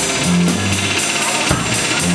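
Live psychedelic soul band playing: electric guitar and drum kit, with a cymbal struck about four times a second over low held notes and a heavier drum hit about one and a half seconds in.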